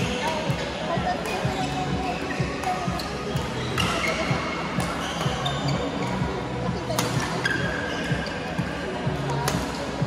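Badminton doubles rally: a handful of sharp racket strikes on the shuttlecock, a second or more apart, with shoes squeaking on the court mat, over hall chatter and music.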